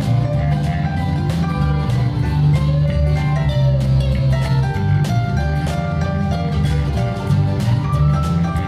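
A live band playing: a steel-string acoustic guitar strummed in a steady rhythm alongside a Roland RD-700 stage piano. It is recorded on a low-quality microphone with a 12 dB bass boost, which gives a heavy, boomy low end.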